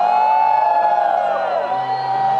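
Live concert sound: slow piano accompaniment with a long held high voice note. Many voices in the audience scream and whoop over it.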